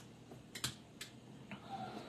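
A few faint, short clicks, about half a second apart, from hands handling an acoustic guitar and settling on the strings just before playing.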